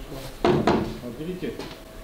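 Two sharp knocks about half a second in as the anchor-locker hatch lid of a Volzhanka 510 boat is lifted open.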